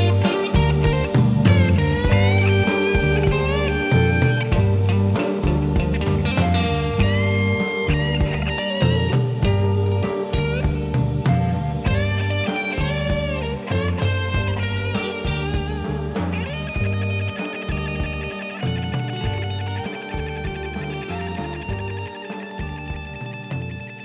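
Blues band instrumental: a Fender Stratocaster electric guitar plays lead lines with string bends over drums and bass with a steady beat. The music gradually fades out.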